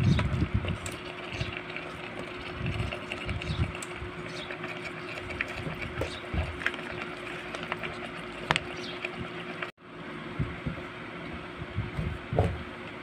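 Chicken pieces and potato chunks sizzling in a metal pot, with scattered crackles and occasional clicks and knocks of a wooden spatula stirring. A brief dropout comes near the end.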